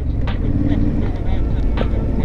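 2017 Triumph Street Scrambler's 900 cc parallel-twin engine running at a steady cruise, heard through a helmet-mounted microphone with wind rush. Faint bits of the rider's voice come in briefly.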